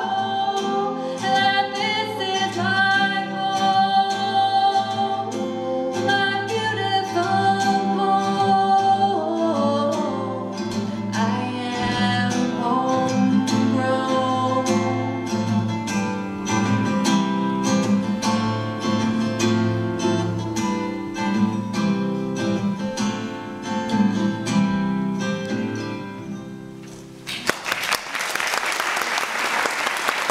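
Acoustic guitar strumming and a violin playing the closing bars of a song, the last chord dying away about 27 seconds in, followed by audience applause.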